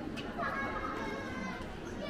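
High-pitched children's voices calling out over general chatter, starting about half a second in.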